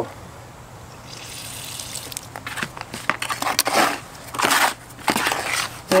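A trowel stirring and scraping mortar mix in a plastic bucket as water is worked into the dry powder. From about two seconds in there is a run of irregular scraping strokes.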